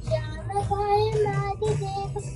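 A young girl singing a Sanskrit devotional hymn, holding and bending long notes over a low musical accompaniment.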